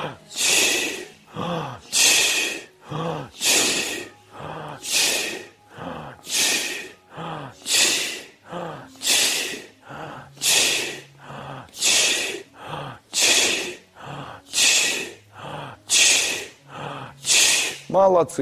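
A man repeatedly breathing out a sharp, hissing "chi" sound, about one every second and a half, with a quieter breath drawn in between each; it is the "chi" sound of a breathing exercise.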